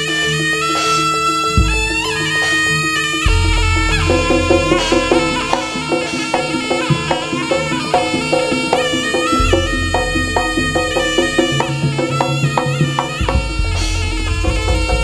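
Live Javanese jaranan music: a shrill, reedy wind melody over drumming and deep gong strokes, with the drumming and heavy bass coming in about three seconds in.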